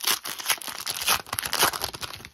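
Foil wrapper of a hockey card pack being torn open and crinkled by hand: a dense, continuous crackle of tearing and rustling.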